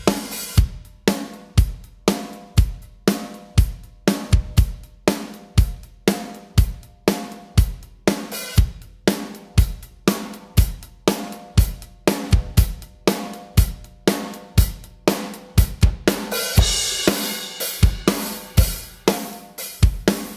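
Playback of a recorded acoustic drum kit through its overhead microphones: kick and snare hits about twice a second under hi-hat and cymbals. A heavily compressed parallel copy of the overheads is being blended in, and the cymbals grow louder and brighter about three-quarters of the way through.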